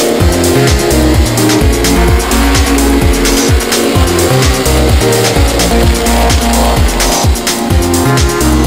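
Electronic dance music with a steady kick-drum beat of about two beats a second and a pulsing bassline.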